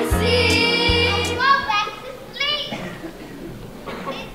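Stage show music with a heavy bass beat and singing, cutting off about a second and a half in, followed by short bursts of children's voices calling out.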